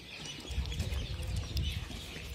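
Birds calling faintly and intermittently, over a low, uneven rumble.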